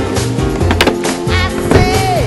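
Skateboard on a wooden mini ramp: urethane wheels rolling and the trucks knocking and scraping on the metal coping, with two sharp clacks in the first second. Background music plays throughout.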